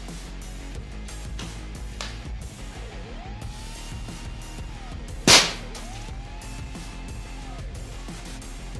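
A single shot from a Walther Reign PCP bullpup air rifle: one sharp crack about five seconds in, fired through a chronograph during a velocity test.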